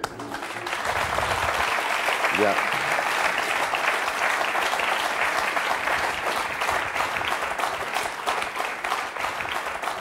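Studio audience applauding: dense clapping that builds within the first second, holds steady and eases slightly near the end.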